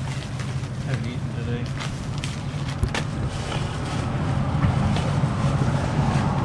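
Road traffic on a busy street, a steady low rumble with vehicle noise building over the last couple of seconds. Paper wrapper crinkles and rustles come in short clicks around the middle.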